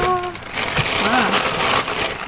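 Thin plastic bag rustling as it is handled and pulled out of a parcel box.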